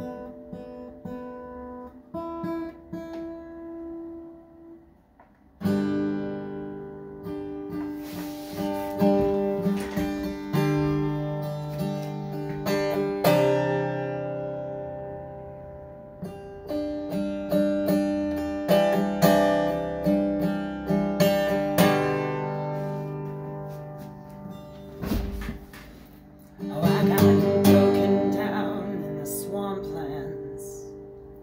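Acoustic guitar played solo: a few quiet picked notes, then strummed chords from about five seconds in, with a brief break near the end before louder strumming resumes.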